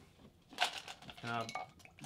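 Glassware being handled on a table: one sharp glassy clink about half a second in, then a few faint ticks, followed by a man's short 'uh'.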